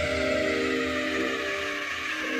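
Minimal deep tech electronic music in a quieter stretch: held synth tones, with the heavy low bass of the surrounding bars mostly dropped out.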